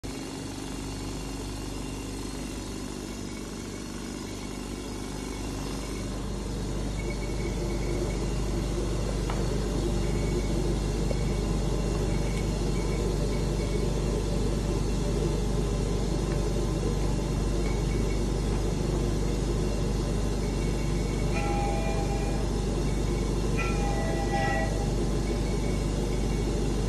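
Steady low drone and hum of running test equipment: an oil-free air pump and a particle filtration efficiency tester. It grows louder over the first several seconds, then holds.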